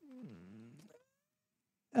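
A brief, faint voice-like call in the first second, its pitch dipping and then rising again.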